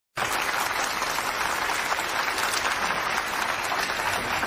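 An audience applauding steadily, a dense, even clapping.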